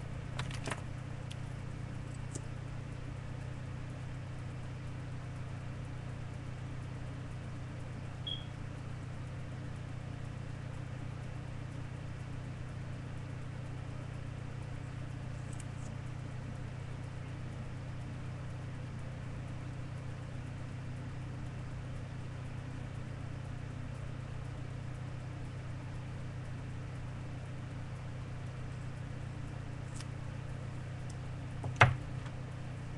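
A steady low hum that does not change, with a few faint clicks in the first second and a brief faint high chirp about eight seconds in.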